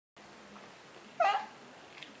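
A baby's single short, high-pitched squeal about a second in, over faint room noise.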